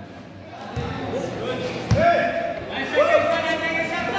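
A basketball bouncing on a concrete outdoor court during play, two thuds about a second apart.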